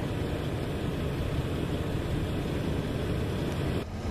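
Steady rumble of a freight train rolling past, with a continuous low drone underneath. The sound cuts out for a moment near the end, then carries on.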